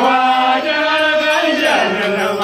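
A group of voices chanting a traditional Dinka song together on long held notes, with the pitch sliding down near the end.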